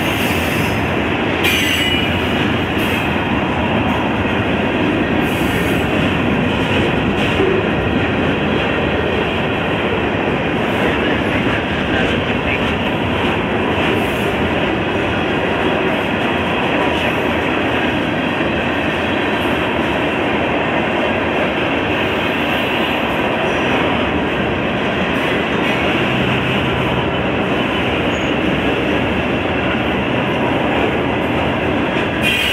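CSX freight train's open-top hopper cars rolling past close by: a steady, loud rumble of steel wheels on rail that neither builds nor fades.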